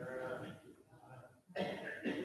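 A person coughing and clearing their throat, fairly faint, in two bouts: one at the start and a stronger one about a second and a half in.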